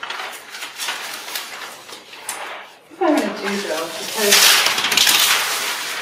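Painting tools and jars being handled at a studio worktable: light clicks and clatter, then a brief murmur of a voice about halfway through, then a loud rustle for about a second and a half near the end.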